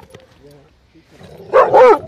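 Airedale Terrier giving two quick, high-pitched barks in close succession about one and a half seconds in.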